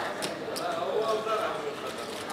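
Plastic casino chips clicking and clacking as they are handled and stacked, with indistinct voices talking underneath.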